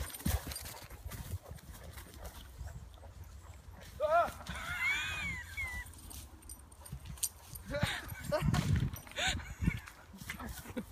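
Rustling and thudding footfalls through dry bracken under a low rumble of wind and handling on a moving camera. About four seconds in comes a high-pitched squealing cry that rises and arches, the loudest sound here, and a few shorter cries follow near the end.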